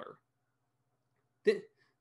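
A man's spoken word trails off, then a pause of near silence, then one short, sharp catch of breath in the throat about one and a half seconds in.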